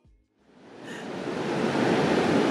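Ocean surf on a sandy beach, a steady rushing that fades in about half a second in after a moment of silence and grows louder.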